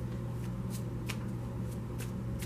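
A steady low hum with a few faint, brief clicks or rustles in a pause between words.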